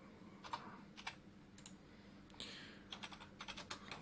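Computer keyboard being typed on, faint: a few single keystrokes at first, then a quicker run of keys near the end. A short soft hiss in the middle.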